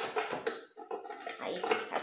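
Light metal clicks of a butterfly whisk attachment being fitted onto the blades in a stainless-steel Thermomix bowl, with a woman's voice speaking briefly over it.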